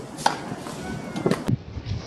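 Several sharp knocks of tennis balls on a hard court, racket strings striking the ball and the ball bouncing, with voices in the background.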